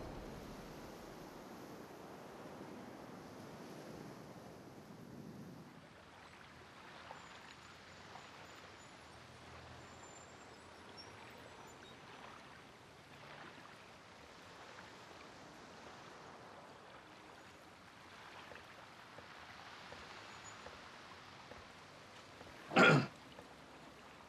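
Faint harbour ambience of water lapping against a moored boat. One brief loud sound comes about a second before the end.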